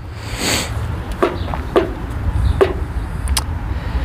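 A car going by on the road: a low rumble of engine and tyre noise, with a few short clicks over it.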